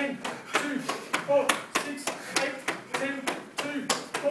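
Karate punches landing one after another on the chest through a cotton gi, about three sharp slaps a second, with voices heard between the strikes.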